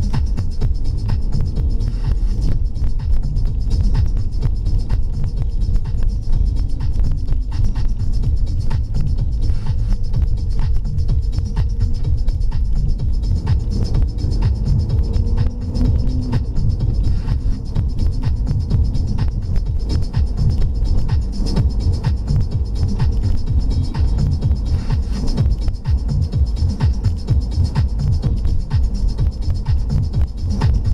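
Dance music with a steady beat playing on the car radio, heard inside the cabin over the low engine and road noise of the Alfa Romeo 159 being driven.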